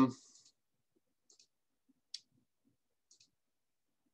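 One sharp click about two seconds in, with a couple of much fainter ticks before and after it, in otherwise near silence. This is a click at the computer as the presentation advances to the next slide.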